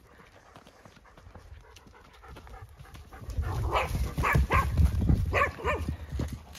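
A dog panting close up in a few short, uneven breaths from about three seconds in, over a low rumbling thud of movement.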